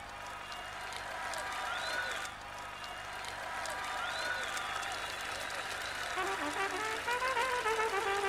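Audience applauding and cheering after the band's final hit. About six seconds in, a solo brass horn starts a new melody over the applause.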